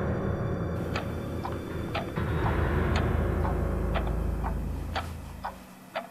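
Film soundtrack with a clock-like ticking, about two ticks a second, starting about a second in. Under it a deep, low drone fades away near the end.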